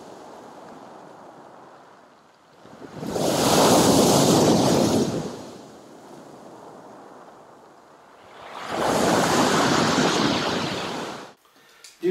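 Sea waves breaking on a pebble beach: a steady wash with two loud surges about five seconds apart, cutting off abruptly shortly before the end.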